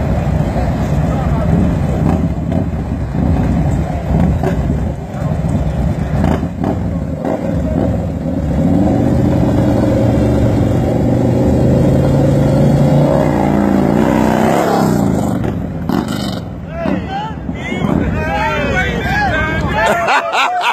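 Two Harley-Davidson bagger V-twin engines running loud side by side at the start of a street race, climbing in pitch as they accelerate away. The engine sound dies off about fifteen seconds in, and voices shout near the end.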